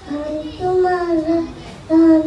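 A young boy singing into a microphone, drawing out his notes, with a brief break near the end.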